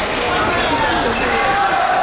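Shuttlecock struck by badminton rackets, with footfalls on the court, as a doubles rally comes to an end, under loud shouting and cheering from spectators.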